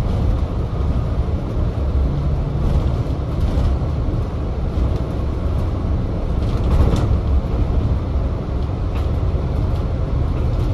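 Inside a Volvo B5TL double-decker bus on the move: a steady low engine and road rumble, with a few faint rattles now and then.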